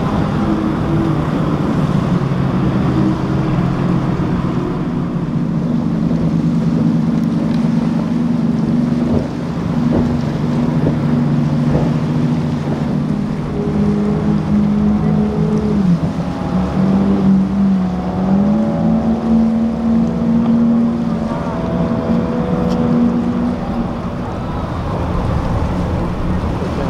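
Twin outboard engines of center-console powerboats running at speed, a steady drone over water spray and wind. Around two-thirds of the way through, the engine pitch dips and climbs back.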